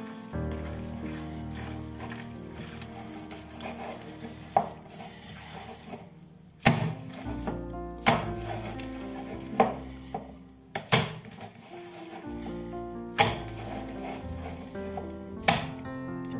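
Background music with held tones, over ground beef mixture being kneaded by hand in a ceramic bowl. From about halfway through come six sharp slaps, roughly every one and a half to two seconds, as the mass of mince is lifted and thrown back down into the bowl.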